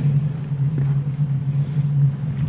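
A steady low hum fills a pause between speakers, with faint room noise over it.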